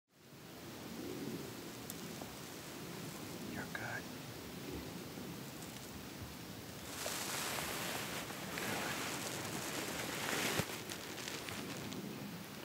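Hushed whispering over a steady outdoor hiss, the whispering mostly in the second half, with one sharp click near the end.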